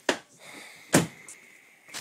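Two sharp knocks about a second apart, the second the louder.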